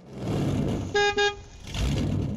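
Cartoon car sound effect: a rush of engine noise as a vehicle passes, with a quick double horn toot, beep-beep, about a second in.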